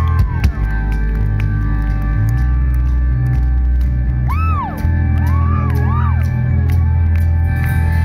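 Live rock band playing loud through stage amplification, electric guitars and bass holding heavy sustained notes with drums, several sharp hits just after the start. Two short rising-and-falling cries cut through about halfway and near six seconds.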